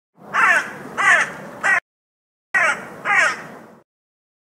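Crow cawing: three harsh caws, a short pause, then two more, each call dropping in pitch.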